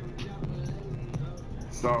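Background music with a steady low beat of about two thumps a second, under a pause in a man's talk. Near the end a man says "So".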